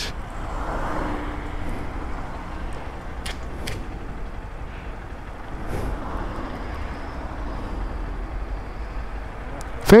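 A steady low rumble of outdoor street background, with a few faint short clicks a few seconds in.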